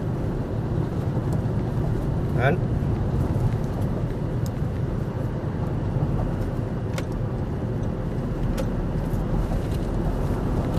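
Steady low road and engine rumble inside a moving car's cabin at highway speed.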